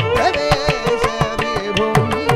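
Carnatic music: a gliding melody from the male voice and violin over a dense, quick run of mridangam and ghatam strokes.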